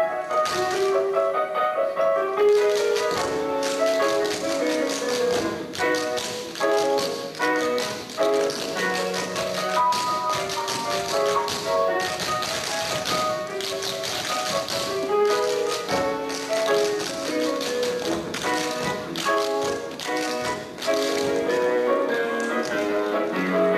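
Tap shoes striking a wooden stage in quick, dense rhythms over melodic dance music.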